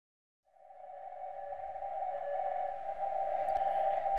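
A steady single-pitch electronic tone that fades in about half a second in and slowly grows louder, unbroken.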